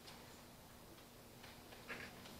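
Near silence: room tone with a faint steady hum and a few faint, irregular clicks, the loudest near the end.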